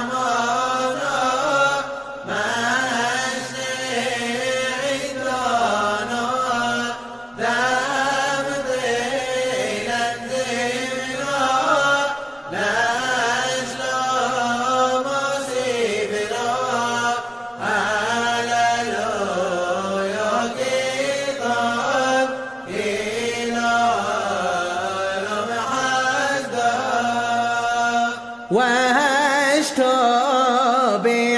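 A male voice chanting a Hebrew piyyut for Simchat Torah in the Yemenite style, unaccompanied. The melody is ornate and winding, sung in phrases of about five seconds with a short breath between each.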